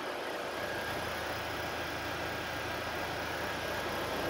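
Chevrolet Captiva engine idling steadily, heard from the open cargo area, with a faint high steady tone over the hum.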